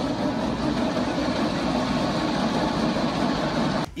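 Gym treadmill running at speed: a steady, unbroken motor and belt noise that stops abruptly near the end.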